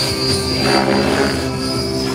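Radio-controlled helicopter flying aerobatics: the steady hum of the main rotor and motor with a high whine, whose pitch shifts a couple of times as the rotor is loaded.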